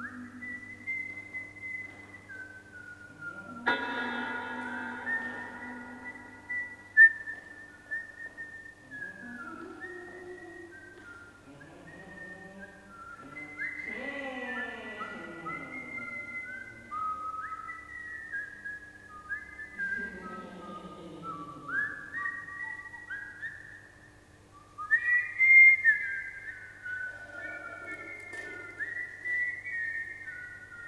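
High whistled melody of held notes that slide from one pitch to the next, with falling, sweeping tones through the middle. A single sharp strike about seven seconds in and a few loud strikes close together near the end stand out above it.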